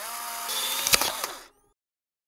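Polaroid instant camera's motor ejecting a print: a whirr lasting about a second and a half, with a couple of sharp clicks near the end before it cuts off.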